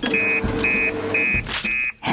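Cartoon fire-station emergency call printer beeping, a high-pitched beep about twice a second, as it prints out a call-out message. A lower steady tone sounds under the beeps for the first second or so.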